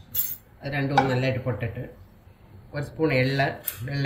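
A metal spoon clinks briefly against a frying pan near the start and again near the end as spices are dropped into the oil, under a person talking.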